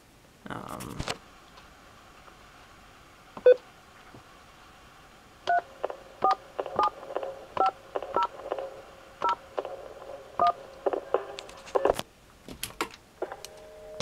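Touch-tone (DTMF) dialing on a corded desk telephone's keypad in speakerphone mode: a single short beep, then a run of about eight short two-tone key beeps at irregular spacing as a number is keyed in, with a few clicks near the end.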